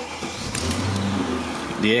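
Mercedes-Benz CL500's 5.0-litre V8 starting, heard from inside the cabin: the engine catches about half a second in and runs with a steady low note as it settles toward idle.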